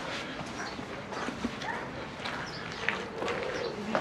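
Footsteps on stone paving, a run of irregular taps and scuffs, over open-air ambience.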